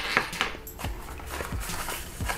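Cardboard packaging being handled: light clicks, taps and rustles as the paperboard box insert is picked up and opened.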